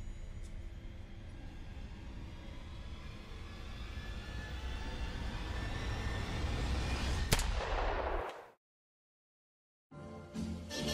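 Eerie soundtrack drone swelling steadily louder, broken about seven seconds in by a single sharp gunshot bang and a brief burst of noise, then cut off into total silence.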